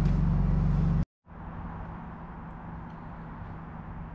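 Wood-Mizer LT40 sawmill engine running steadily, cut off abruptly about a second in; after a short gap, a quieter, steady low engine hum from a vehicle carries on.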